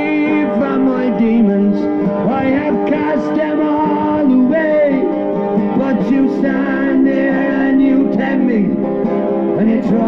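A man singing a song while strumming a steel-string acoustic guitar.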